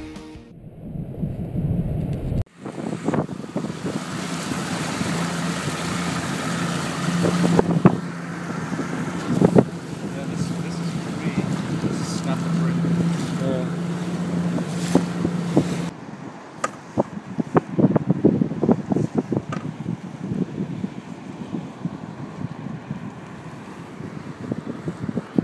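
A small boat's outboard motor running steadily under way with wind rushing over the microphone, broken by a few sharp knocks. About two-thirds through the motor stops, leaving wind noise and irregular knocks and splashes against the hull.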